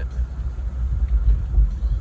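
Low, steady rumble of a car's road and engine noise heard from inside the cabin while driving.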